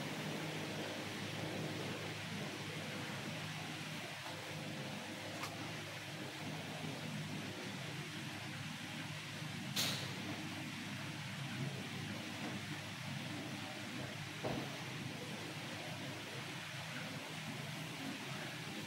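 Steady, quiet room noise with a faint low hum. A few faint short taps and scrapes come from a marker and wooden ruler working on a whiteboard, the clearest about ten seconds in.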